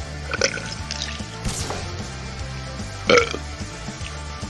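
A man drinks from a bottle, then gives one loud burp about three seconds in. Background music with a steady bass line plays underneath.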